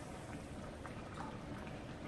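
Pot of meat steaming and simmering on the stove: a faint, steady bubbling hiss with a few soft ticks.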